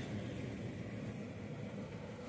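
Quiet, steady background room noise with no distinct sounds.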